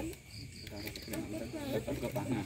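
Crickets chirping, a high note in short repeated pulses.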